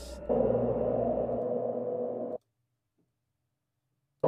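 Software synthesizer from Propellerhead Reason, played through Mainstage via ReWire, holding one steady note. It starts a moment in and cuts off abruptly after about two seconds into dead silence.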